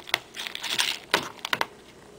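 Table knife chopping hard-boiled egg into dry dog kibble in a bowl: sharp clicks of the blade on the kibble and bowl, with a short scrape a little before halfway through.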